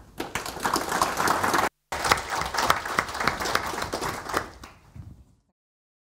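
Audience applauding, a dense patter of many hands clapping, with a short gap in the sound about two seconds in; the applause tails off and stops just before the end.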